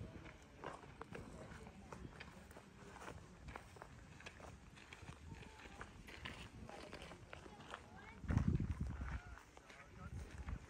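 Footsteps crunching on a gravel path, with the faint voices of other walkers. About eight seconds in, a brief louder low rumble.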